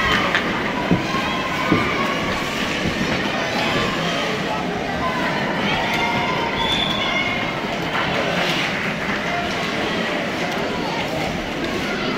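Ice hockey rink ambience during play: scattered distant voices and shouts of players and spectators over the scrape of skates on ice, with a couple of sharp clicks of stick on puck in the first two seconds.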